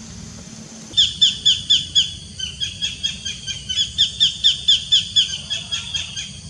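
A bird calling a rapid series of short, high, falling notes, about four to five a second. It starts about a second in and keeps going to the end.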